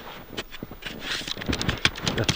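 Boots crunching and shifting in deep snow while a metal probe rod is worked into the snowpack, giving irregular crunches, scrapes and a few sharp clicks.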